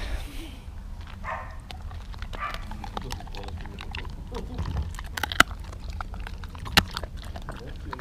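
A dog chewing a hard treat stick close to the microphone: irregular crunching clicks, with a few sharper cracks in the second half.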